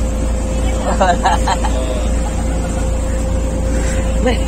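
Small motor boat's engine running steadily while under way, a low rumble carrying a constant whine.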